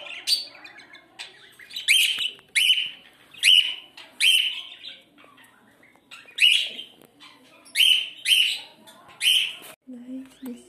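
Caged pet birds calling: about ten loud, sharp chirps that sweep up in pitch, roughly one a second, with a short lull midway.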